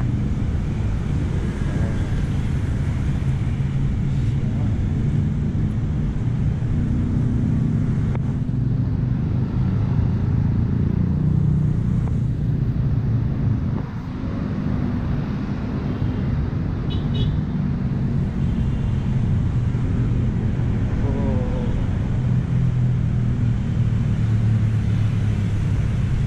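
Steady road traffic: cars and motorcycles passing on a busy multi-lane city road, heard as a continuous low hum of engines and tyres that dips briefly about halfway through.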